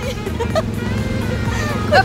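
Small engine of an Autopia ride car running steadily as the car drives along, a low even hum.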